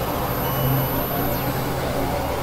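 Dense layered experimental electronic drone: a steady low hum that swells briefly in the first second, a thin high whine above it, and faint sliding tones over a noisy wash.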